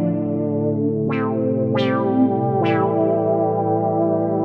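Arturia Prophet-5 V software synthesizer (an emulation of the 1977 Sequential Circuits Prophet-5) playing held notes. New notes strike three times, each opening with a bright, quickly closing filter sweep over the sustained tones.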